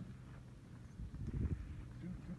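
Clear lake ice cracking underfoot: a low, dull thump about a second and a half in.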